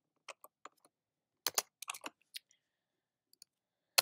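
Scattered computer keystrokes while a block of code is copied and pasted: a few single clicks, then a quick cluster of about five near the middle, then a couple more taps near the end, with silence between.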